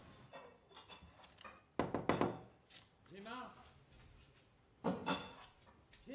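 Knocking on a wooden door with glass panes: a short bout of raps about two seconds in and another near the end.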